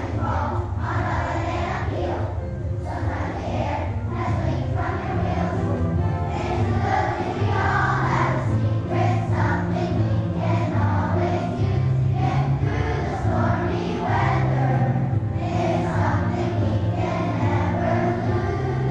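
Elementary-school children's choir singing a song with instrumental accompaniment.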